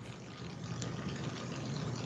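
Steady low hiss and hum of an open Skype video-call audio line, with no one speaking.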